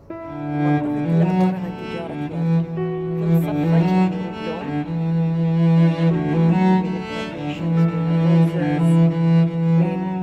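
Background music led by a low bowed string instrument such as a cello, playing long held notes. The music swells back in right at the start.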